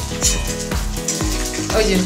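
Food sizzling in a hot aluminium wok over a gas flame while a spatula stirs it. Background music with steady low notes plays throughout.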